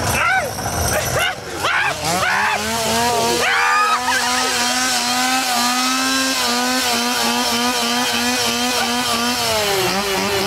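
Shrieks and cries in the first few seconds. About two seconds in, a small engine revs up and is held at a steady high speed, its pitch pulsing slightly toward the end.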